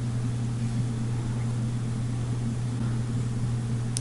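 Steady low hum with a faint hiss over it, unchanging, with no distinct clicks or knocks: background room tone.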